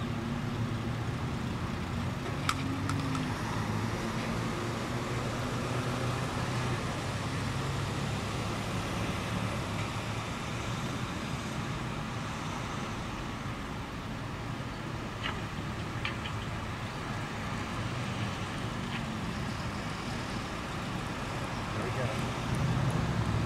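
Steady road-vehicle noise, a continuous rumble with a low hum that bends slightly in pitch a couple of times, with a few faint clicks.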